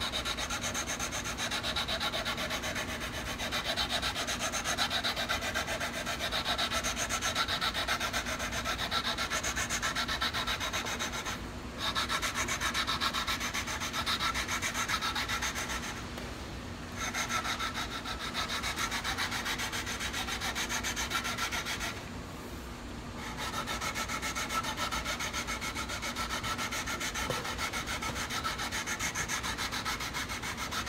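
Sandpaper on a straight leveling stick rubbed back and forth lengthwise over an electric guitar's metal frets, leveling the frets across the fretboard. The stroking runs steadily with three short breaks, about a third, a half and three-quarters of the way through.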